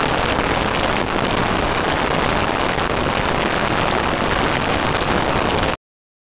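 Loud, steady hiss of static, even from low to high with no tone or rhythm, that cuts off abruptly into dead silence near the end.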